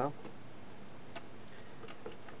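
Low steady hiss from a switched-on record player, with a faint click about a second in and another near the end.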